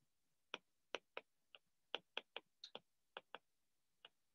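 Faint, sharp clicks of a stylus tip tapping on a tablet's glass screen while handwriting, about a dozen irregular taps.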